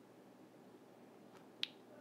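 Near silence: faint room tone, broken by one short, sharp click about a second and a half in.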